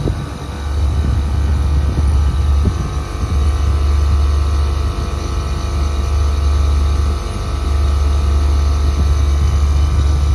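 Air-conditioner outdoor unit running, its Copeland scroll compressor and fans giving a loud, steady low hum with a few brief dips.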